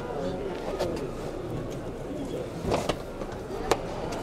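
Indistinct background voices over steady outdoor noise, with sharp clicks a little under three seconds in and again near the end.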